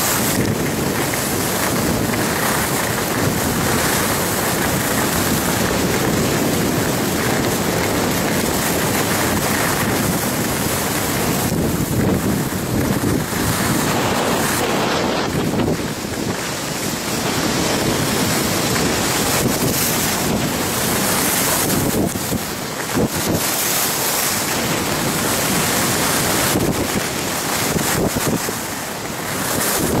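Steady rushing of wind over the microphone of a camera carried by a skier descending a piste, mixed with the hiss of skis running on packed snow. The noise dips briefly a few times, near the middle and toward the end.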